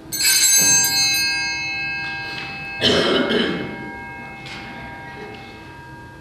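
Altar bells rung once just after the start, their many high tones ringing on and fading over several seconds: the bell that marks the consecration of the chalice at mass. A cough about three seconds in.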